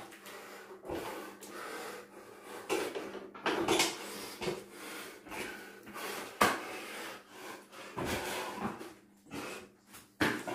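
A man breathing hard with loud, forceful exhales while doing burpees, with several thumps of bare feet and hands landing on an exercise mat, the sharpest about six and a half seconds in.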